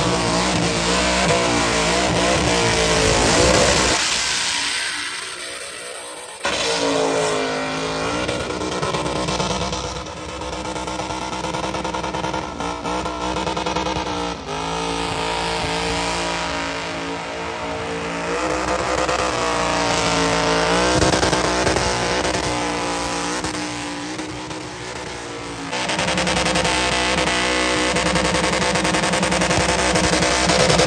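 GMC Sierra pickup doing a burnout: the engine revs hard, rising and falling over and over, over the hiss of the spinning rear tyres. There is a short lull about four seconds in before it comes back abruptly.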